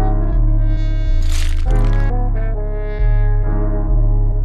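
Dark trap instrumental beat: long, deep bass notes that change every second or so under a held melody of several pitched notes, with a noisy swell near the middle.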